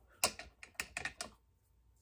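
Paper and fabric scraps handled and crinkled on a craft table: a quick run of sharp crackly clicks through the first second or so, then quiet.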